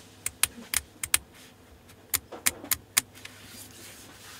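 Sharp small clicks from a Nikon telephoto zoom lens and DSLR body being handled and operated, in two quick runs: about five in the first second and four more around two to three seconds in.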